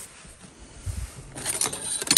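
A soft thump about a second in, then light clicks and clatter of small hard objects near the end, as something knocks over and falls.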